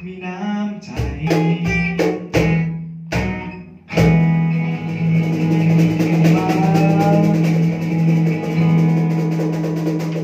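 Acoustic trio of steel-string acoustic guitar, cajon and male singer playing the end of a song: cajon hits over strummed chords, then, about four seconds in, a final chord rings out under a long held note.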